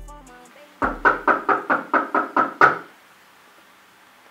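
Rapid knocking, about nine quick, evenly spaced knocks over two seconds.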